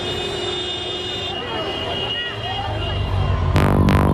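Busy street noise: traffic and a babble of voices. A low rumble builds from about halfway, and electronic dance music with a strong beat starts near the end.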